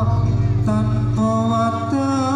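Live band music accompanying a Topeng Ireng dance: a melodic line of held notes that bend in pitch, broken off about three times, over a low steady tone.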